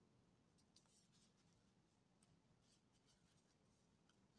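Near silence: room tone with a few very faint ticks.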